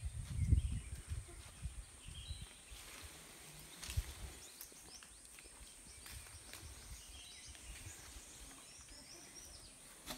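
Quiet outdoor ambience under trees: faint short bird chirps over a thin steady high whine. There are a few low thumps in the first second and a single sharp knock about four seconds in.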